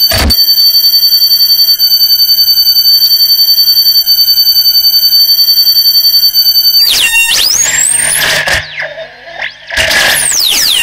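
Electronic noise music: a stack of steady high electronic tones with a fast, even flutter in loudness. About seven seconds in it breaks into a rising pitch glide over a wash of hiss, dips briefly, then returns loud with falling glides.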